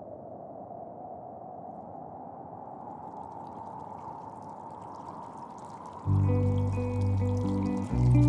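A steady wash of running, trickling water for about six seconds. About six seconds in, music comes in much louder, with sustained low chords.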